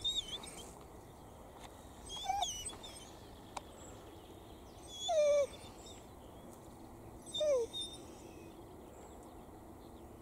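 German shorthaired pointer whining three times, each a short whine sliding down in pitch, a couple of seconds apart: a hunting dog eager to go while held in a down.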